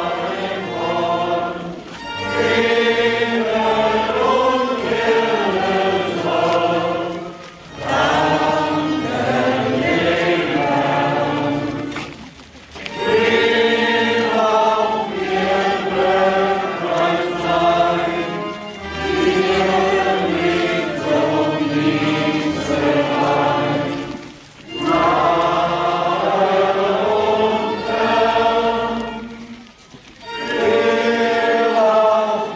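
A choir singing a hymn in long phrases, with a short pause every few seconds between lines.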